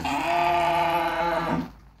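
A cow mooing: one long, steady call that stops about a second and a half in.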